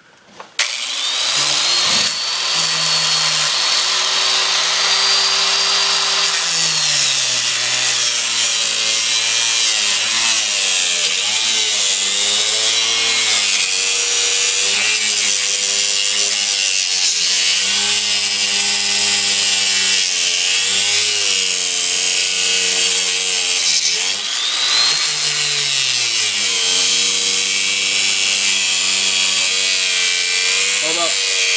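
Angle grinder cutting through a KX250 dirt bike's steel drive chain: a continuous grinding hiss that starts just after the beginning, with the motor's pitch sagging and recovering over and over as the disc is pressed into the cut.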